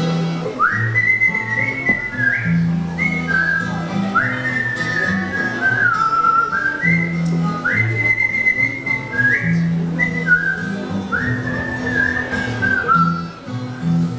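A man whistling a melody over a strummed twelve-string acoustic guitar. Each whistled phrase opens with an upward slide, about every two seconds.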